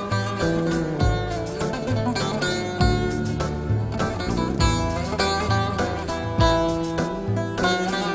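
Instrumental music led by a bağlama (Turkish long-necked lute), its strings struck in quick, repeated strokes over held low notes.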